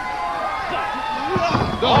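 A wrestler's body slams onto the ring mat with one heavy thud about one and a half seconds in, after a fall from the top turnbuckle.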